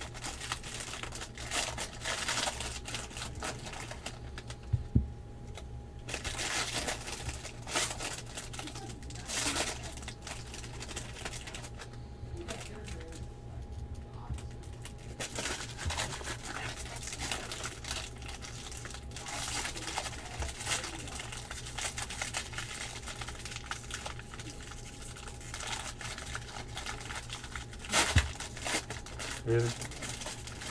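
Foil trading-card pack wrappers crinkling and being torn open, with cards handled and set down on a table, over a steady low hum.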